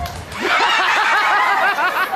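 A high-pitched human laugh, a rapid repeated cackle of about seven beats a second, starting about half a second in just after the music cuts off.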